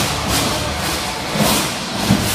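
Loud, steady arena din during a live robot combat fight: music over the PA mixed with the mechanical noise of the robots.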